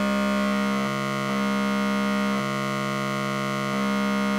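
A steady, buzzy synthesizer tone from the pulse (comparator) output of a DIY Lockhart/CGS52 wavefolder module. Its level dips and comes back a few times as the fold is turned further.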